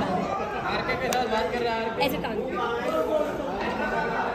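Several people talking at once: overlapping chatter of voices in a large room.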